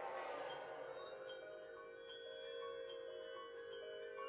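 Concert wind ensemble music in a quiet, sustained passage: held tones underneath and short, ringing, bell-like percussion notes repeating above them, after a bright shimmering wash that swells and fades at the start.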